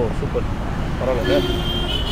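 Soft speech over a steady low rumble of street traffic, with a steady high tone coming in near the end.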